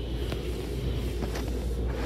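Water jets of an automatic car wash's pre-rinse spraying against a pickup truck, heard from inside the cab as a steady rushing hiss over a low rumble.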